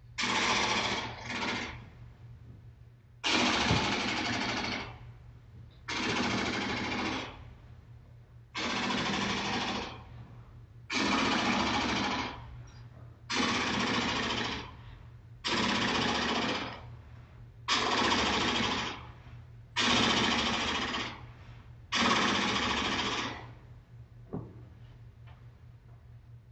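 Simulated rapid-fire gunfire for a toy gun fight: about ten rattling bursts, each a second or so long, coming roughly every two seconds.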